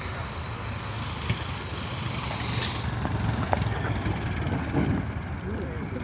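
De Havilland Tiger Moth biplane's four-cylinder inverted inline engine running with a steady low drone as the aircraft rolls across the grass after landing. Spectators' voices are faintly mixed in near the end.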